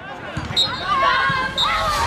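Women's football match: a thud of a ball being kicked, with players' raised voices calling out on the pitch.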